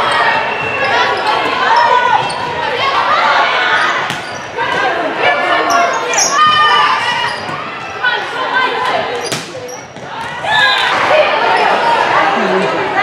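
Indoor volleyball rally in a gym: players' voices calling and shouting over one another, with a few sharp slaps of the ball being hit, echoing in the hall.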